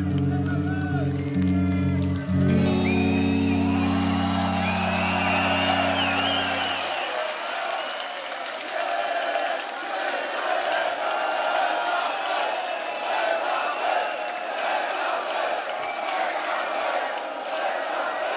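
A metal band's electric guitars and bass hold a final sustained chord that cuts off about seven seconds in. A large arena crowd cheers and whoops over it and keeps cheering after the band stops.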